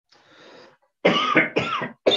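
A man draws a soft breath, then coughs twice in quick succession into his hand.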